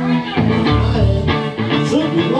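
Live rock band playing: electric guitars, bass guitar and drums, loud and continuous.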